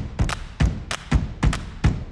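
Percussion beat of intro music: steady low drum thumps about twice a second, with sharp clicks between them.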